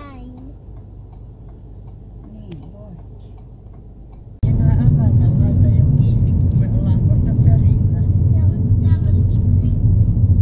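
Car cabin noise while driving: a quiet low hum at first, then a sudden jump about four and a half seconds in to a much louder, steady low rumble of engine and tyres on the road.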